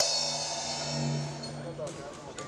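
Boxing ring bell struck once to start the round, ringing out and fading over about a second and a half.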